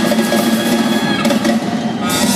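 Live jazz band playing in a large hall, heard from the audience; a held note ends a little over a second in.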